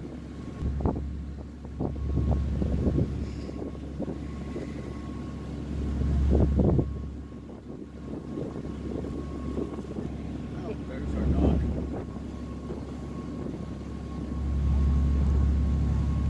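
A ferry's engine droning low and steady, with a faint steady whine above it and wind buffeting the microphone in gusts, loudest about six and a half seconds in, about eleven and a half seconds in, and near the end.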